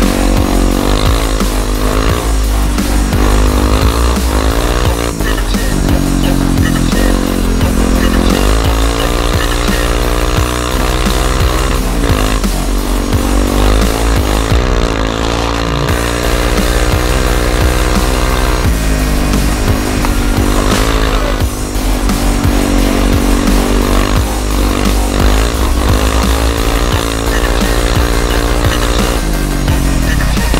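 Background electronic music with a steady beat, over a Bombardier DS 650 quad's single-cylinder engine revving up and down as it is ridden.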